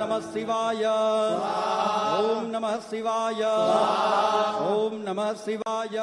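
Hindu mantras chanted during a Shiv puja, voices held in long sliding phrases over a steady low drone.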